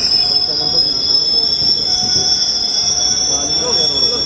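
Passenger train wheels squealing on the rails with several steady, high-pitched tones, over the lower rumble and clatter of the running coaches.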